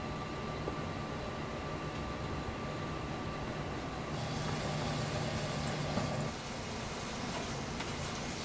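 Steady background room noise from the small room: an even hiss with a low hum and a faint thin steady tone. It grows slightly brighter about four seconds in.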